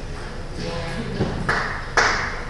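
Table tennis ball clicking twice on bat and table, about half a second apart, in a reverberant sports hall, with people's voices in the background.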